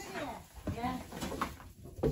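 Women talking quietly: short stretches of speech that the transcript did not catch.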